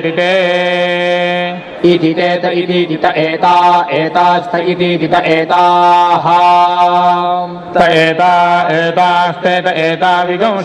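Vedic chanting (Veda parayanam): voices reciting mantras on a few steady pitches, with long held syllables about a second in and again around six seconds in, and two short breaks for breath.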